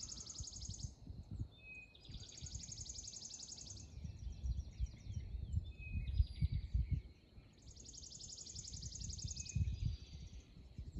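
A songbird singing a high, fast trill about two seconds long, three times, with other short bird chirps between. Low thuds of walking footsteps and camera handling sit underneath.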